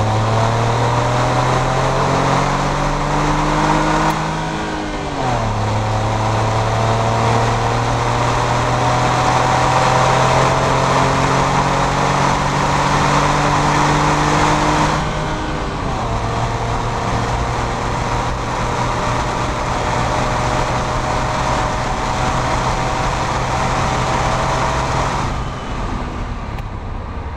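2011 Smart Fortwo's three-cylinder engine accelerating through the gears: the note climbs slowly in each gear and drops at each upshift, three times.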